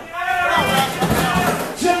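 Men's voices talking: live commentary speech.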